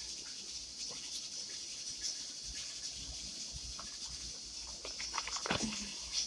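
Cooked chicken being torn apart by hand over a pot: faint soft tearing and small taps as pieces drop in, with a cluster of sharper clicks near the end, over a steady hiss.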